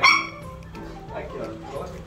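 A single short, high-pitched dog yip right at the start, with quieter talk going on behind it.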